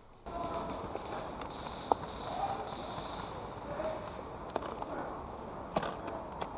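Rustling of leaves and undergrowth brushing past as someone moves low through an overgrown trench, with scattered soft clicks and knocks, a sharp one about two seconds in.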